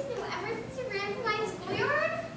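Only speech: young actors' voices speaking stage dialogue, too unclear for the words to be made out.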